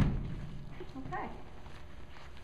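A single low thud as a horse steps backward down out of a horse trailer onto the arena floor.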